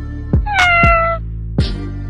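A cat's single meow about half a second in, lasting under a second and falling in pitch, over background music with a steady bass beat.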